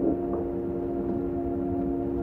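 Muffled soundtrack music from a 1950s TV movie playing next door: a chord held steady, with almost nothing in the treble, over a low background rumble.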